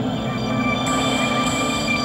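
Ominous background-score drone: a steady low buzzing rumble under held synthesizer tones, with a higher shimmering layer joining about a second in.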